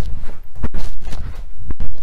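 Trainers landing on the floor from hopping half squat jumps: heavy thuds about a second apart, with shuffling of the feet between them.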